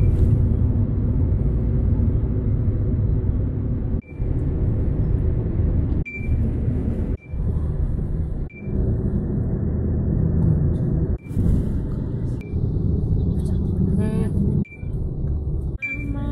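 Steady low rumble of road and engine noise inside a moving car, cut off briefly several times, with a short high beep at most of the breaks.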